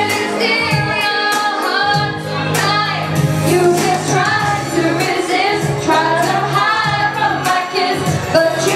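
A woman singing a pop song live over instrumental accompaniment with a steady beat and bass line.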